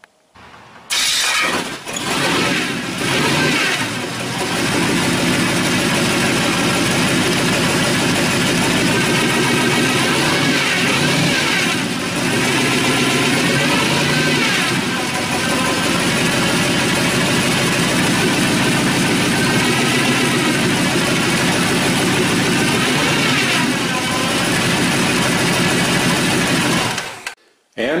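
Ice-cold 350 V8, fed by a tunnel ram with two Holley 450 four-barrel carburetors, cold-started after several days unused: it cranks for a few seconds, catches about four seconds in and runs steadily, rising and falling in revs a couple of times, then stops just before the end.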